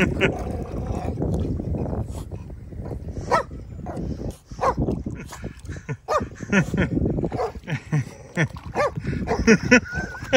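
A small dog giving a string of short, pitched yelps and whines as it goes after a hooked fish in shallow water. The calls come thick in the second half, with splashing water from the dog's movement.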